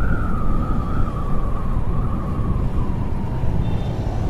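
Motorcycle riding at speed: engine running under heavy wind rumble on the bike-mounted microphone, with a steady high-pitched whine that wavers slightly and fades near the end.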